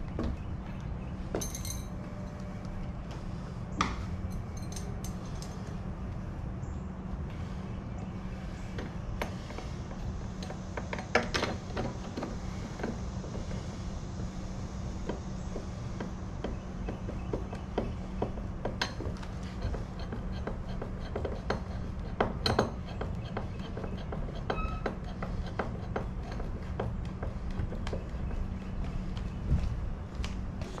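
Scattered short metallic clicks and clinks of a hand screwdriver and lock hardware being worked on a door's edge plate, a few a little louder than the rest, over a steady low hum.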